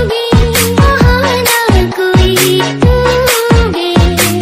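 Indonesian TikTok-style DJ remix: a fast, driving beat of deep kick drums several times a second, a steady bass line and a lead melody that slides between notes.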